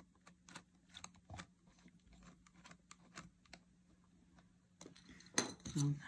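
Faint, irregular small clicks and ticks of a small screwdriver turning a tiny screw into the metal internals of an opened laptop, with a louder click near the end.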